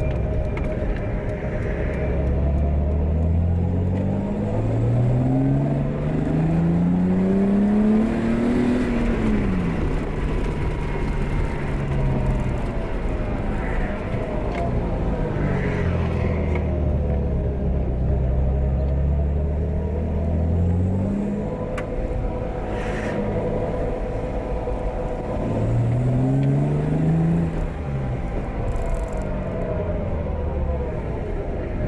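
BMW E30's 2-litre inline-six engine heard from inside the cabin while driving. It accelerates hard twice, the engine note rising through the revs, with steadier cruising between.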